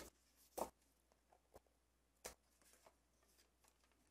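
Near silence broken by a couple of faint short clicks: scissors snipping off the overhanging end of a paper strip and the card being handled.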